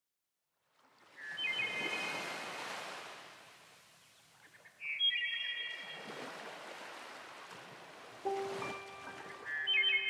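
Nature-sound music: after a short silence, ocean surf washes in and out in slow swells, with a glittering run of chimes as the first swell comes in and again about five seconds in. Sustained instrument notes enter near the end.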